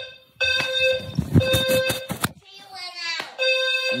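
A household alarm sounding a steady electronic tone. It cuts out briefly twice, once just after the start and once a little past the middle. A quick run of knocks or clicks sounds over it in the first half.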